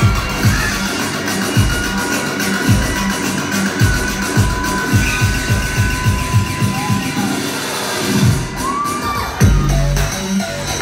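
Electronic dance music played loud over a club sound system: the kick drum quickens into a fast build-up roll, then a heavy bass line drops in near the end, with the crowd cheering.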